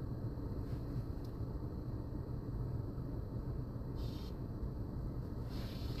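Steady low background hum with a faint hiss in a pause between speakers, with one brief soft noise about four seconds in.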